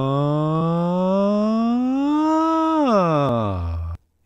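A man's voice holding one long sustained tone that glides slowly upward in pitch, then slides quickly back down and stops just before the end. He is sweeping his voice through a stock 4x4 foam-lined vocal booth to make its resonances ring.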